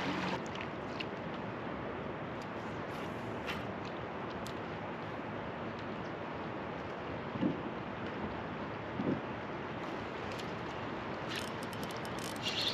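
Steady rush of river current and wind around a drifting kayak, with a few faint clicks. Near the end a spinning reel starts clicking quickly as the fish is reeled in.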